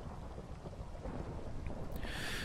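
Faint, steady low rumble like distant thunder, with a light rain-like hiss, from a background ambience track.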